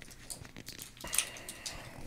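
Soft clicks and paper crinkles of wings being handled in a paper-lined basket on the table, with one sharper crackle about a second in.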